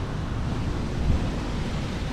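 Wind buffeting the camera microphone: a steady, low, rumbling rush with no tone in it.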